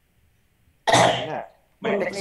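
A person coughs once, sharply, about a second in, then starts speaking.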